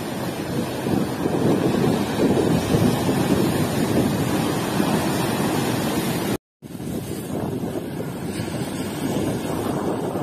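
Surf breaking and washing over a rocky shore, with strong wind buffeting the microphone. The sound cuts out completely for a moment about six and a half seconds in, then carries on.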